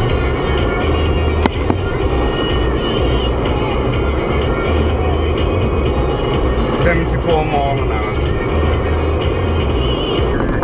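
Steady road and engine noise inside a car's cabin at motorway speed, with music and an indistinct voice underneath.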